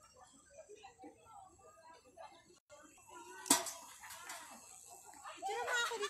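Faint, scattered chatter of several women's voices, with a single sharp click about three and a half seconds in; the voices grow louder near the end.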